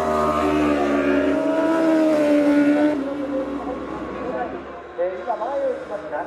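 1000 cc superbike engine at racing revs. Its note holds loud and high for about three seconds, then drops and fades.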